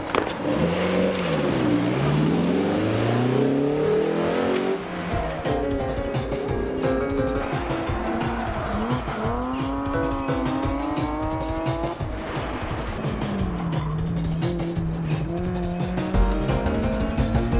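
Cars driven hard on an autocross course, engines revving up and down with tyre squeal, mixed with music; a steady beat comes in about five seconds in.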